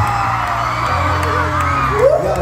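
Loud live pop music over a concert PA, with a heavy bass line, and fans screaming and whooping over it.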